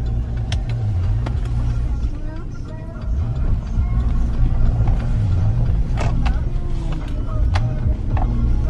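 Vehicle cabin noise while driving: a steady low rumble of engine and road, with a few sharp clicks or knocks, the loudest about six seconds in.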